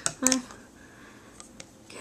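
A short spoken syllable just after the start, then a few faint light clicks as a hard plastic snap-on phone case is picked up and handled.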